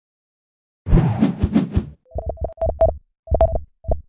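Electronic intro sting: a swelling whoosh with a few sharp hits, then a run of short synthesized beeps at one pitch over low thumps, in groups.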